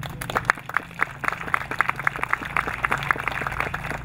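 Small audience applauding, with the separate hand claps standing out.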